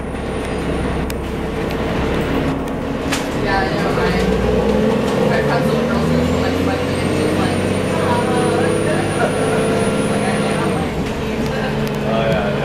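Diesel bus heard from inside the passenger cabin while it drives: the 1990 Gillig Phantom's Cummins L-10 engine and Voith D863.3 automatic transmission running under load, with a low steady rumble. A thin, high whine rises about halfway through, holds, and cuts off shortly before the end.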